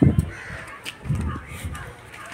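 Crows cawing, over low thumps of footsteps on a concrete floor, the loudest near the start and again about a second in.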